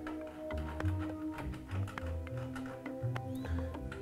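Background music: a repeating bass line under held notes, with light regular percussion clicks.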